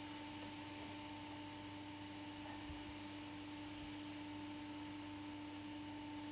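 Quiet room tone: a steady hum under a faint hiss, with no distinct strokes or knocks.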